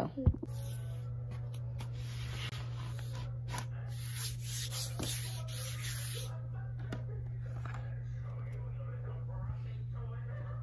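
Rustling, rubbing handling noise with a few light knocks, loudest for the first six seconds and quieter after, over a steady low hum.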